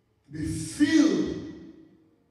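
A man's voice over a microphone: one drawn-out vocal sound, about a second and a half long, its pitch sliding down partway through.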